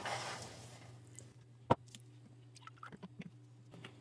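Faint steady low hum with one sharp click about two seconds in and a few faint ticks after it, from a plastic drink bottle being picked up and handled.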